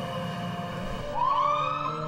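An emergency vehicle siren starts about halfway through, its wail gliding slowly upward in pitch over a low rumble.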